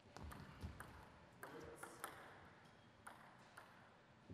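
Table tennis ball being struck back and forth in a short rally, heard as about eight quiet, sharp clicks of the celluloid ball on the bats and the table, unevenly spaced, with a few low thumps in the first second.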